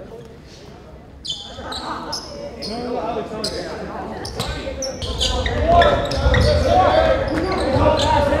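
Live game sound in a gymnasium: a basketball bouncing on the hardwood court amid indistinct voices of players and spectators, getting louder about halfway through.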